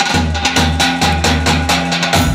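Live wedding band music kicking in suddenly: a brisk percussion beat of about five strikes a second over steady bass notes.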